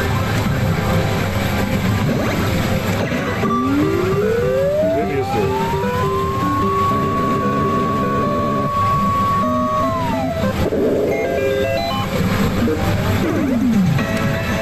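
Famista pachislot machine's electronic effect sounds over the steady din of a pachislot hall. A rising tone climbs and holds for a few seconds, then drops and gives way to short game-style notes and a falling glide. The sequence belongs to a reel presentation that ends in a confirmed bonus.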